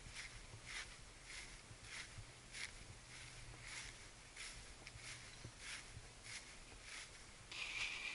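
Faint footsteps on short fairway grass at a walking pace, about one step every three-quarters of a second, over a low steady hum.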